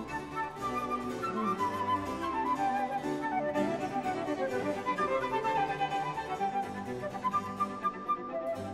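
Instrumental background music, a melody stepping up and down over a sustained accompaniment.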